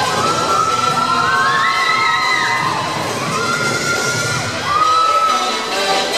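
Young spectators cheering, with several long, high-pitched shouts held over the routine's music.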